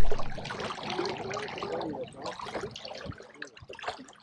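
Water lapping and trickling around a fishing boat, a crackly run of small splashes and drips, with faint voices in the first two seconds.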